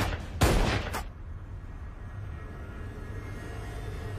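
Two gunshots in the first second: a heavy one about half a second in and a shorter, sharper one at about one second. After them comes a low rumble.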